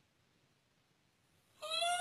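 A woman's high-pitched whimpering whine, one drawn-out cry rising slowly in pitch, starting about one and a half seconds in after near silence.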